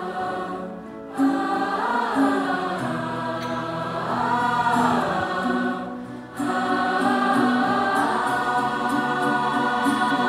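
Large mixed choir singing, in phrases with short breaks about a second in and again about six seconds in.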